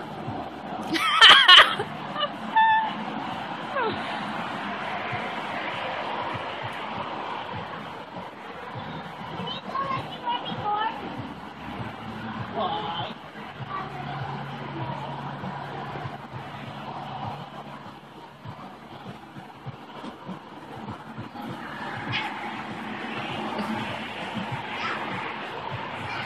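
Indistinct voices and playground chatter, with a short, loud, high-pitched shriek about a second in and a brief squeal soon after. A low steady hum runs for a few seconds in the middle.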